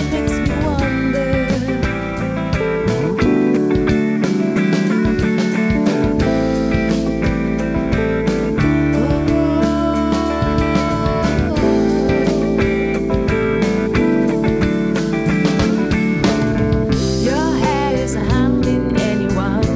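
A full rock band playing with electric guitar, bass, drums and keyboard, the drums keeping a steady beat.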